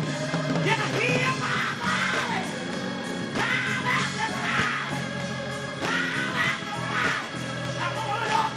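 Gospel choir singing with instrumental accompaniment, voices rising and falling over a steady low backing.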